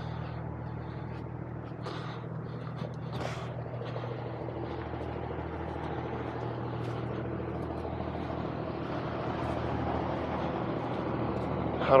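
Kenworth C500 truck's diesel engine idling steadily, with a couple of short clicks about two and three seconds in.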